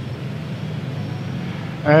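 A steady low background rumble, fairly loud and even throughout, with no distinct events. It is the noise that spoils this recording.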